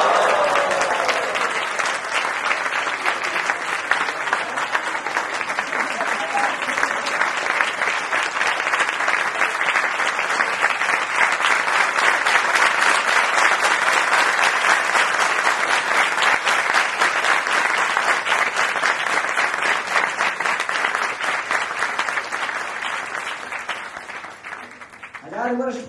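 A large audience clapping in sustained applause, loud and even, fading out near the end.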